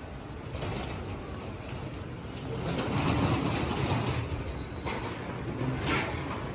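Outdoor street ambience heard while walking: a noisy rumble swells about halfway through and fades again, with a couple of sharp clicks near the end.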